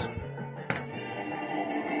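Fruit King 3 slot machine playing its electronic tune at a low level, with a single sharp click a little under a second in.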